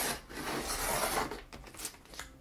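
Sliding paper trimmer's cutting head drawn along its rail, slicing through a sheet of sublimation paper in one continuous stroke of about a second and a half, followed by a couple of light clicks near the end.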